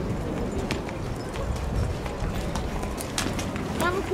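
Hooves of walking racehorses clip-clopping on a hard path, irregular single clicks, with people's voices in the background, one close by near the end.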